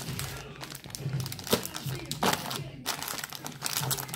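Plastic sweets bag crinkling as it is handled, with irregular crackles and a few louder ones in the middle.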